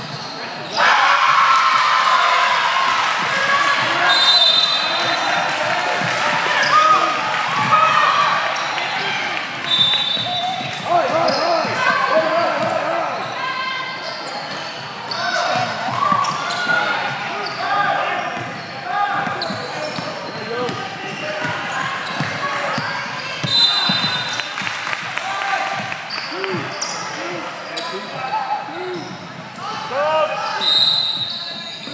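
Basketball game noise in a reverberant gym: players and spectators calling out over one another, a basketball dribbling on the hardwood floor, and a few short, high sneaker squeaks.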